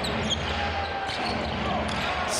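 Live game sound in a basketball arena: a steady low hum of the hall and crowd, with a basketball being dribbled on the hardwood court.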